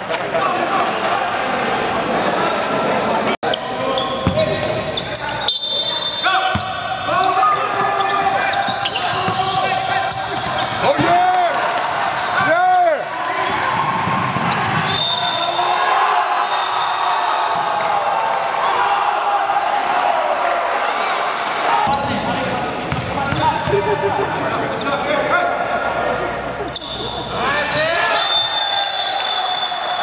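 Basketball game on a hardwood court in a large echoing gym: the ball bouncing amid players' shouting and calls. The sound drops out for an instant a little over three seconds in.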